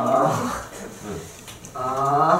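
A man's drawn-out, wordless vocal sounds, voiced twice: one at the start and another near the end, with a short lull between.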